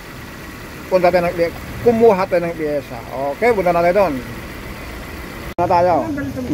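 A man speaking over the steady idle of a Suzuki four-cylinder engine. The engine has been shaking and misfiring, which the mechanic puts down to a failing ignition coil. The engine sound cuts off abruptly near the end.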